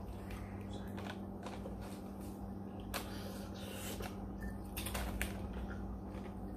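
Close-up chewing of noodles, with scattered small clicks and crackles, over a steady low hum.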